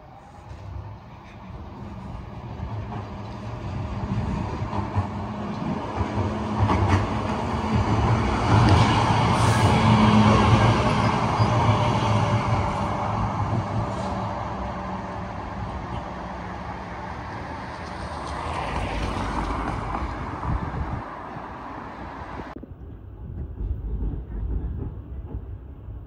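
Sheffield Supertram tram passing close by on street track: a rumble of wheels on rail with a low steady hum, building up to loudest as it goes by, then fading away. It cuts off suddenly near the end.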